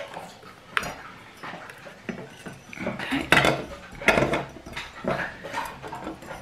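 Electrical tape being pulled off and pressed down, with hands and the battery pack knocking and scraping inside a ceramic teapot. There are a few sharp, louder crackles and knocks, the loudest a little past three and four seconds in.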